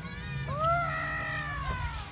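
A single long, high-pitched, meow-like cry starting about half a second in, rising then slowly falling in pitch over about a second and a half.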